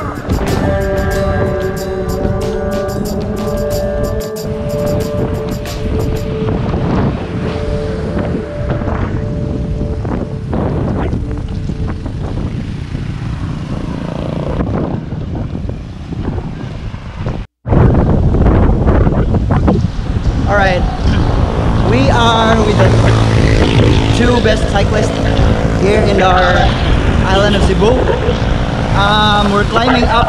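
Wind rushing over an action camera's microphone on a moving road bike, mixed with background music. The sound drops out for an instant past the halfway point, then comes back louder.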